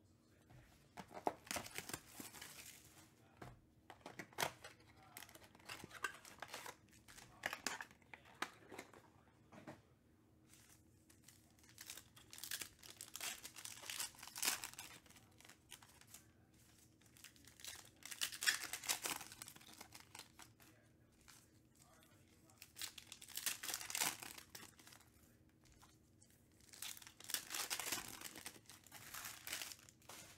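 Plastic trading-card pack wrappers being torn open and crinkled, in short bursts of crackling every few seconds with quiet gaps between.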